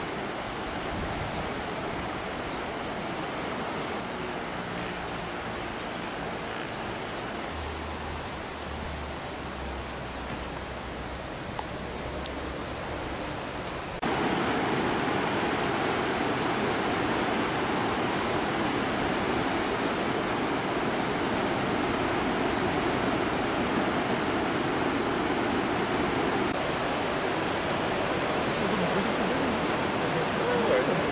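Steady rushing wash of ocean surf that jumps to a louder level about fourteen seconds in.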